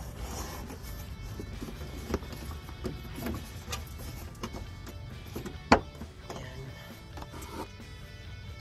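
Background music over hand-handling noise at a car's headlight housing: scattered light plastic clicks as the plastic dust cover on the back of the headlight is worked off, with one sharp click a little past two-thirds of the way through.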